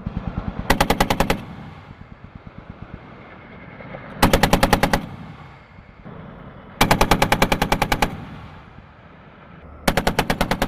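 Browning M2 .50-calibre heavy machine gun firing in short bursts: a burst of about a second near the start, another about four seconds in, and a longer burst near seven seconds, with the next burst beginning at the very end.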